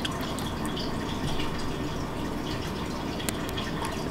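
Wet chewing of a juicy bite of orange: a few faint smacking clicks over a steady hiss.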